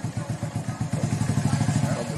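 Small motor scooter engine idling steadily, a rapid even putter of about a dozen beats a second.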